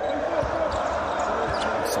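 A basketball being dribbled on a hardwood court, against steady arena background noise.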